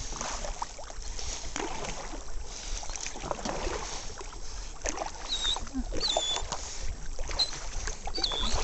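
Canoe moving on a pond: paddle strokes and water lapping against the hull, with a low rumble underneath. A few short, high whistling chirps come about five to seven and a half seconds in.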